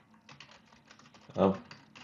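Typing on a computer keyboard: a quick, uneven run of key clicks as a sentence is typed.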